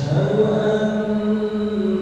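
The imam chanting the opening of the prayer in Arabic, holding long, steady notes with a brief rise at the start.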